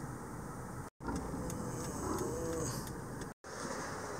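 Steady road and engine noise inside a moving car, broken twice by brief gaps of dead silence where the footage is cut.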